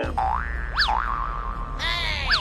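Cartoon-style comedy sound effects: a run of springy boing and whistle glides, the pitch swooping up and dropping back, a held whistle tone through the middle, then a cluster of falling boings near the end.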